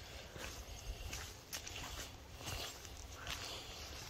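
Faint footsteps of a person walking at an easy pace, about two steps a second.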